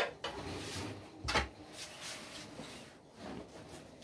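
Fabric rustling softly as a length of cloth is handled and spread over a wooden cutting table, with a click at the start and a single louder knock about a second in.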